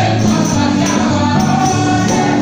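A live gospel worship band playing, with electric guitar, keyboard and drums, and voices singing over a steady beat.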